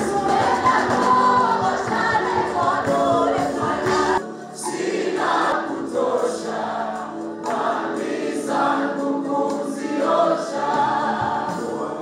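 Choir and congregation singing a gospel worship song. About four seconds in, the bass and percussion drop out and the voices carry on with lighter accompaniment.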